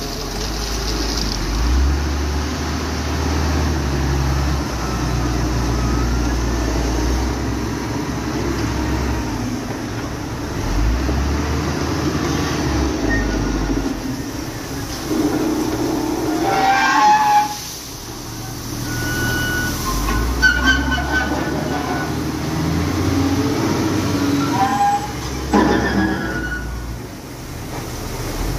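Wheel loader's diesel engine working under load, its low drone rising and falling as the machine drives and lifts its bucket to tip stone into a batching plant hopper, with a few sharp knocks along the way.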